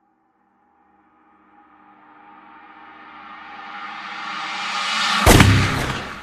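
Outro music stinger: a pitched swell that builds steadily louder from about a second in and ends in a loud, sharp hit near the end, followed by a ringing decay.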